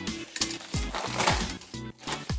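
Background music, with two short bursts of rustling and light clatter from a bag of porous lava-rock drainage substrate being handled.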